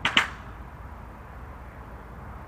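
A short breathy burst from a person's voice right at the start, then steady low background rumble.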